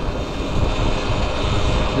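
Steady wind rush and road noise on the rider's microphone from a Cake Kalk electric motorcycle ridden slowly through traffic, with no engine note.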